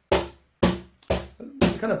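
Cajon with internal snare wires played with the tone stroke, fingers striking near the top of the front plate: four even strikes about half a second apart, each with a short buzzy ring from the wires.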